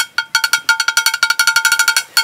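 A metal cooking pot being knocked over and over, each stroke ringing at a clear metallic pitch. The knocks are spaced out at first, then speed up to a fast even roll of about ten a second in the second half.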